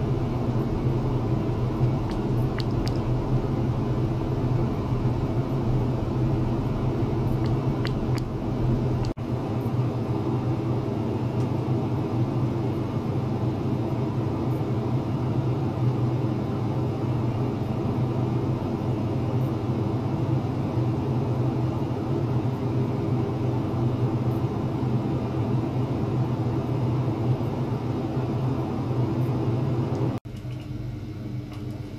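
A steady low hum and rumble holding several constant tones, with a sudden change in the sound about nine seconds in.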